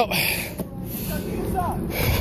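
Faint voices of people talking in the background over a steady rushing noise.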